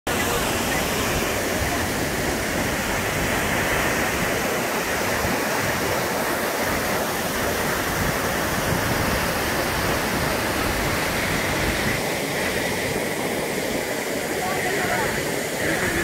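Water pouring over Athirapally Falls: a large waterfall's steady, even rush.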